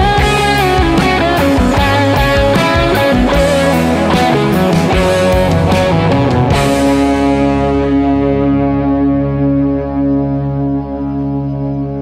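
Instrumental section of a rock song: an electric guitar plays a lead with bending notes over bass and drums. About six and a half seconds in the drums stop and a held chord rings on, slowly fading.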